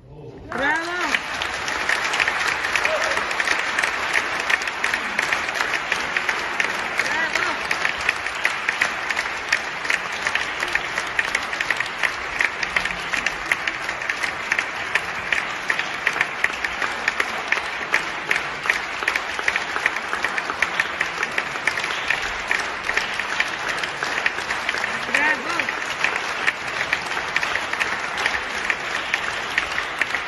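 Concert audience applauding: dense clapping starts suddenly about half a second in and goes on steadily.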